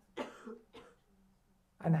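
A short cough followed by two softer throat-clearing sounds.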